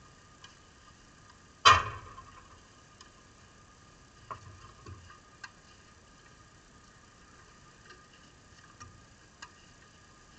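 Tennis ball struck hard by a racket close by, one loud sharp crack about two seconds in with a short ring, followed by a few much fainter knocks of shots and bounces further down the court.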